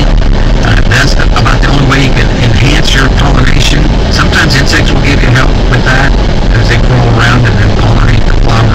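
Car driving, with engine and road noise heard from inside the cabin under muffled, unclear voices.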